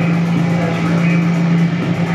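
Live music performance: a loud, steady low drone held under a dense, grainy, engine-like texture.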